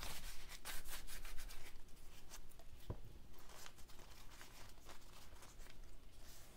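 Damp brown packing paper, just wetted with a spray mister, crinkling and rustling as it is crumpled by hand and then spread flat. The crackling is densest in the first second or so and then becomes a fainter, intermittent rustle.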